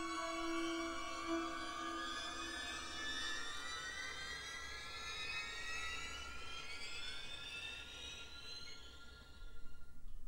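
Orchestral horror film score on vinyl: a held chord fades out while a cluster of tones glides steadily upward in pitch over several seconds, ending in a brief louder swell near the end.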